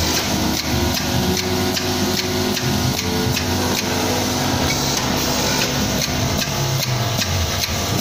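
Vibratory bowl feeders and linear feed chutes running with a steady electric hum, over which come regular sharp clicks, about three a second.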